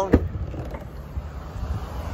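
A single sharp click of the Hyundai Santa Fe's tailgate latch releasing just after the start, then a quieter low rumble as the tailgate is raised.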